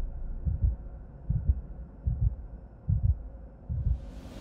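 Heartbeat sound effect: deep paired thumps, one lub-dub about every 0.8 seconds, over a faint low hum.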